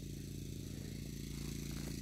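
Greenworks corded electric lawn mower's motor and blade running steadily at a low, even hum.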